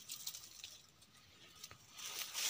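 Quiet, faint rustling of dry brush and weeds as someone moves through undergrowth, with a single small click near the end.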